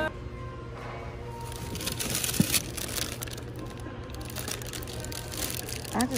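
Indoor shop ambience: a steady low hum with faint background music. Light rustling and small clicks come from handling, with a sharp click about two and a half seconds in and a plastic bag of garlic being picked up near the end.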